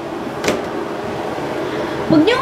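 Steady, even background hiss of room noise, with one short click about half a second in.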